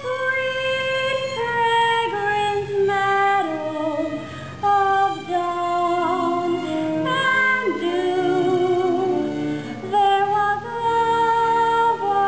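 A young female singer's solo voice singing a melody of long held notes with vibrato, over a soft instrumental accompaniment, pausing briefly between phrases about four and ten seconds in.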